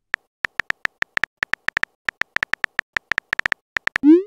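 Phone keyboard key-tap sounds from a texting app: a fast, uneven run of about thirty short clicky ticks, each with a small high tone, one per letter as a text message is typed.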